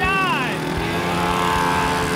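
Two mini motorcycles, a pocket bike and a mini dirt bike, revving their small engines as they pull away from a standing start. A short shout comes right at the start.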